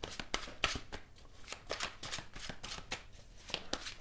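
A deck of tarot cards being shuffled by hand: a run of short, irregular card clicks and flicks.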